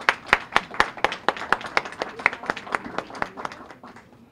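Applause from a small audience, the individual hand claps distinct, tapering off near the end.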